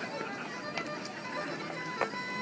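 Solo fiddle playing a lively traditional dance tune with long held notes, with a few sharp taps from the dancers.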